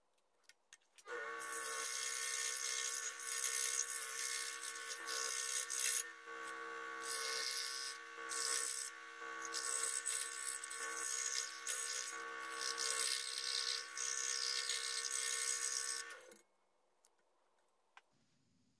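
Electric scroll saw starting about a second in, running with a steady motor hum and the hiss of its fine blade cutting through thin wood, with a few brief dips. It stops abruptly about two seconds before the end.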